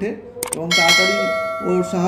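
A click, then a bright bell ding that rings for about a second and fades: the sound effect of an on-screen subscribe button and notification bell animation.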